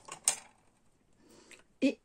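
Handling of craft materials on a cutting mat: one short, sharp clack about a quarter-second in, then faint rustling as a small piece of lace is picked up.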